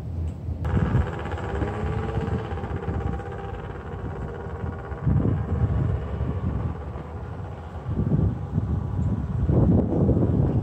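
A motor vehicle's engine running with a steady hum, starting abruptly about half a second in, with louder low rumbles now and then.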